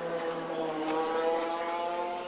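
A two-stroke kart engine running at speed, heard going by: it grows louder to a peak about a second in, then its pitch falls away as it moves off.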